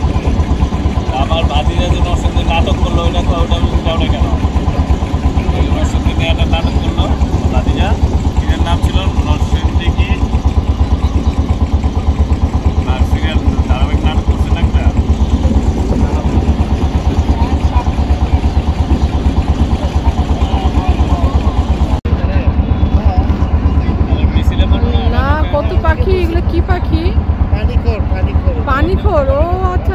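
Engine of a wooden river boat running steadily, a fast, even low chugging throughout, with people talking over it.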